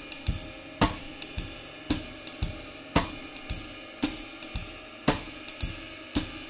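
Jazz swing time on a drum kit: the ride cymbal pattern with hi-hat, and the snare drum struck only on beat two as a sparse comping accent instead of a backbeat on two and four. A strong stroke comes about once a second over the cymbal ring.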